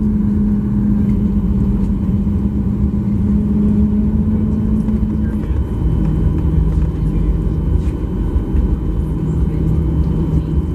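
Cabin noise inside a Boeing 737-800 rolling out on the runway after landing: a steady low rumble from the engines and the wheels, with a droning tone that steps down to a lower pitch about halfway through as the aircraft slows.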